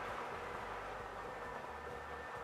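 Lottery draw machine mixing its numbered balls: a steady whirring noise with a faint hum, no separate knocks standing out.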